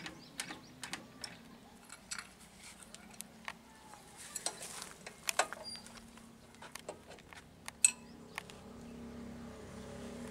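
Irregular metallic clicks and clacks from the levers and fittings of a 1949 38 hp Blackstone stationary diesel engine being worked by hand to get it ready to start, the sharpest knock about eight seconds in. A low steady hum runs underneath and grows slightly louder near the end.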